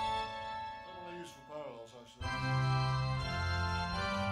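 Electronic keyboard playing an organ sound: a held chord, a downward pitch slide about a second in, then a loud full chord with deep bass coming in suddenly about halfway through.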